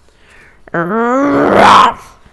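A person's voice imitating a bear's growl, "Rrrughrrr," starting about three-quarters of a second in and lasting about a second, turning rougher and louder near its end.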